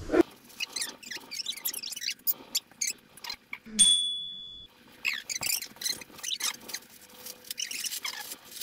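Paper rustling and crinkling in quick irregular bursts, as gift wrap is handled and torn open, with one short high electronic beep just before the middle.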